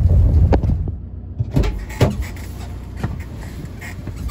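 Low rumble of a small van heard from inside the cab, which stops abruptly about a second in. After that comes a quieter cab with a few light clicks and knocks.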